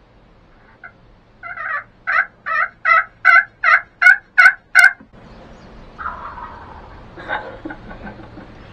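A run of about nine turkey yelps, evenly paced at roughly three a second, each with a low and a high note, growing louder toward the end before stopping abruptly.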